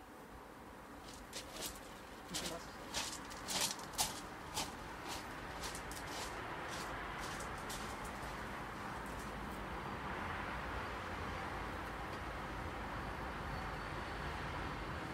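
Footsteps crunching on roof gravel, a dozen or so irregular crunches over the first five seconds, then a steady rushing noise that slowly grows louder.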